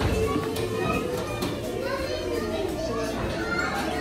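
Young children's voices as they play, with other voices and music behind them.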